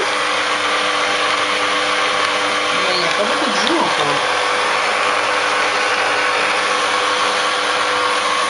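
Hurom slow juicer running steadily, its motor giving a constant hum with a noisy whir as it presses vegetables.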